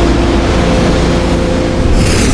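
Molten steel pouring from a steelworks ladle, with the shop's machinery: a loud, steady roar carrying a low hum with a few held tones.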